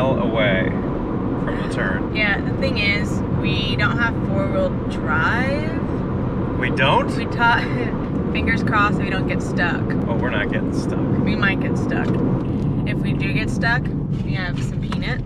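Steady road and engine noise inside a car cabin at highway speed, with people's voices over it now and then.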